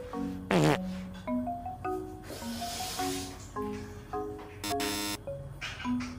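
Cute background music of short marimba-like mallet notes, with a falling whistle sound effect about half a second in and a short buzzy sound effect near five seconds.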